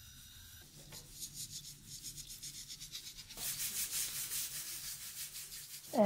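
Rhythmic rubbing, about four strokes a second, starting about a second in and growing louder past the middle.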